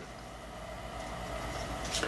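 A steady low hum with faint room noise, and a small click near the end.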